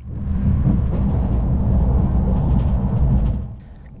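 Low, steady running rumble of a Talgo high-speed train, heard from inside the passenger coach. It swells up just after the start and fades away shortly before the end.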